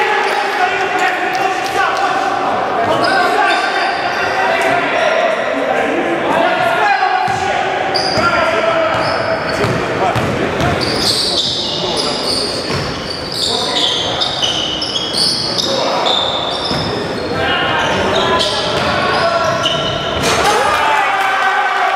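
Live basketball play in a gym hall: the ball bouncing on the wooden court, sneakers squeaking in short high bursts, and players and spectators calling out. Everything echoes in the hall.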